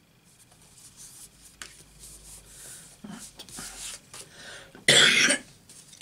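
A person coughs loudly once, near the end, after soft rustling and sliding of card stock being handled.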